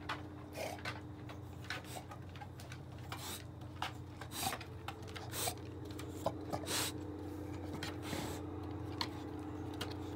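English bulldog moving about and nosing around on a wooden deck: irregular short scuffing noises and a few sharp ticks over a steady low hum.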